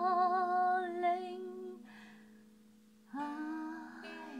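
A woman hums a long held note with vibrato over ringing lyre strings; voice and strings fade out about a second and a half in. After a short lull, new plucked lyre notes and humming begin near the end.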